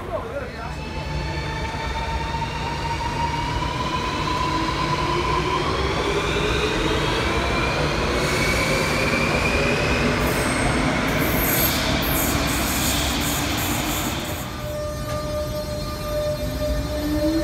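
Renfe Cercanías electric commuter train in motion: its motor whine rises slowly in pitch, with high-pitched wheel squealing through the middle of the passage.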